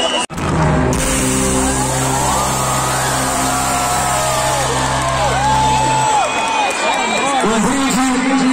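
Live concert music heard from within the crowd: deep held bass notes under a gliding singing voice, with crowd noise, after a brief break in the sound near the start.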